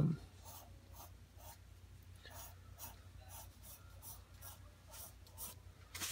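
Sharp graphite pencil flicking short, light strokes onto toned tan sketch paper to draw fine flyaway hair strands: faint scratches about two to three times a second.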